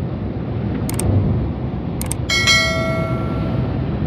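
A bell-chime sound effect from a subscribe-button animation, laid over the steady low rumble of a coach driving at highway speed. Two sharp clicks come about a second and two seconds in, then the chime rings out just after two seconds and fades over about a second and a half.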